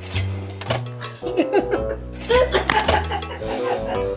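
Light background music with several short clinks, like china cups and cutlery being handled.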